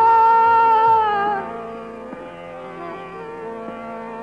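Male Hindustani classical vocalist holding a long, steady sung note that fades out about a second and a half in, leaving a quieter sustained drone of the accompaniment. This is an old live cassette recording, so it sounds dull, with no top end.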